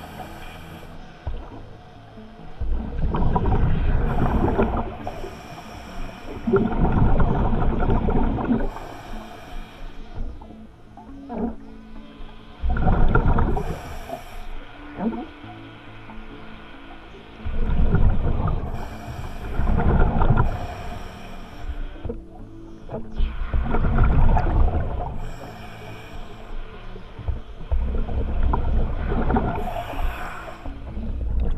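Scuba diver breathing through a regulator underwater: hissing inhalations and bubbling exhalations in a slow cycle, a surge every few seconds.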